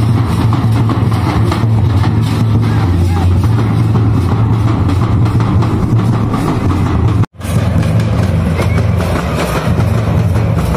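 Traditional drums, dhol-type barrel drums and a large bowl-shaped kettle drum, played together in a continuous dance rhythm with crowd noise. The sound drops out for a moment about seven seconds in, then resumes.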